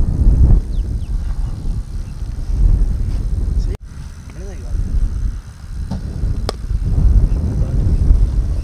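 Low, gusty wind rumble on the microphone. It cuts out abruptly for an instant about four seconds in, and a single sharp knock comes about two and a half seconds later.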